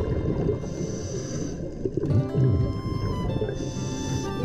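Background music of sustained, held tones over a dense low layer, with a soft hiss that swells twice.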